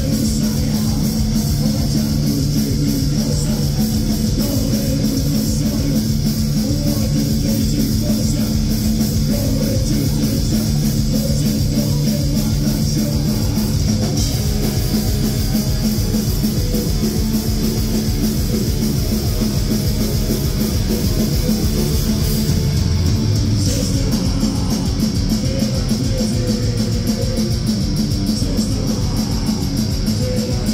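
A live heavy metal band playing loud and without a break: distorted electric guitars over a drum kit.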